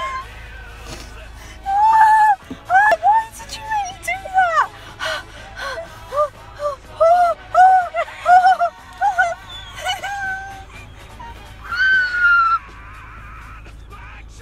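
A girl's high-pitched pained whimpers and squeals in a rapid series of short rising-and-falling cries, ending in one longer cry near the end, as antiseptic cream stings her open foot blisters.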